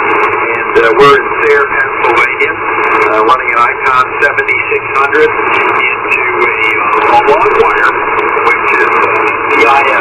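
A distant station's single-sideband voice received on 40 metres through the Yaesu FT-710 transceiver's speaker, thin and narrow-band, buried in steady hiss with frequent crackling clicks.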